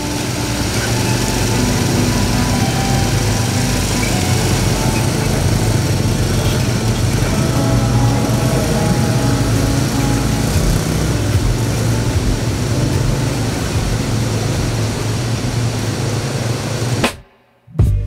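Small quad-bike (ATV) engines running steadily as they drive through shallow river water, with the tyres churning and splashing water. The sound cuts off suddenly about a second before the end.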